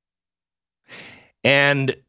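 Dead silence, then about a second in a short breath taken close to a studio microphone, followed by a man speaking.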